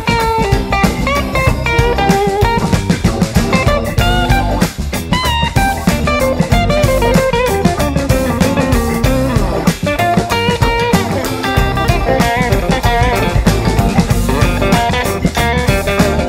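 Instrumental passage of a blues-rock band song, with guitar over drums and bass and no singing, its pitched lines bending in places.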